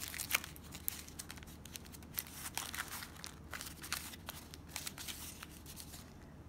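Aluminium foil crinkling in quiet, irregular little crackles as a hand presses and shapes it around a small wrapped container.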